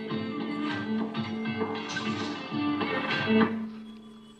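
Recorded music with guitar, streamed by Bluetooth from a phone and played through the Enya EGA-X1 Pro acoustic guitar's built-in speaker. The music drops in level near the end.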